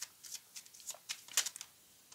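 A deck of oracle cards being shuffled by hand: a faint string of short, irregular card flicks.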